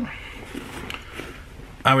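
Quiet room tone with faint rustling and a few light clicks from a fabric tool bag being handled; a man's voice begins near the end.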